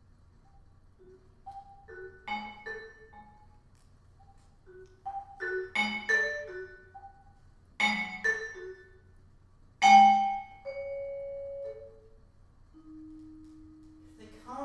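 Vibraphone played with mallets: scattered short notes and several loud accented chords, the loudest about ten seconds in. After it, held notes ring on, stepping down in pitch near the end.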